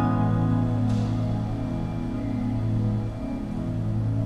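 Keyboard holding one chord over a deep bass note, slowly fading.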